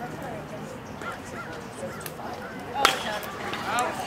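A single sharp crack about three seconds in as a pitched baseball meets bat or glove at home plate, with spectators calling out around it.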